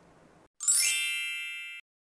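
An edited-in chime sound effect: a single bright ding of many high ringing tones, starting about half a second in and fading, then cut off abruptly after a little over a second.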